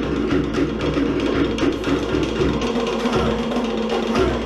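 Live Cook Islands band music for a traditional dance: drums beating in quick, even strokes over a changing bass line.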